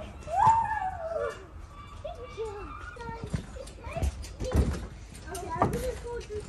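Young children's high-pitched voices calling and squealing at play, without clear words, with a few dull thumps in the second half.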